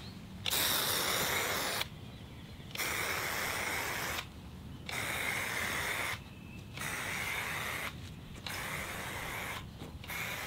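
Inverted aerosol marking paint spraying from a can on a marking wand, in five hissing bursts of about a second and a half each with short gaps between, as a line is painted on bare soil.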